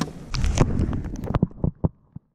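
Fishing net being hauled in over the side of a small boat: a quick run of irregular knocks and taps as the mesh, floats and rope come aboard, thinning out near the end.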